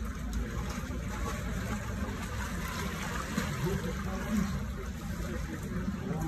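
Cold water sloshing and splashing in a plunge pool as a swimmer wades down into it and starts swimming, a steady wash of water sound with no sharp splashes.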